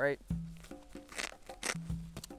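Hook-and-loop fastener holding a backpack's removable hip belt being pulled apart in two short rips, about a second in and again near the end.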